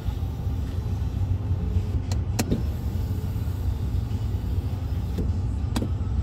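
Power sliding rear window of a Ford F-150 crew cab being run: a faint motor whine for the first couple of seconds, then a few sharp clicks as the glass moves and latches. A steady low rumble fills the cab throughout.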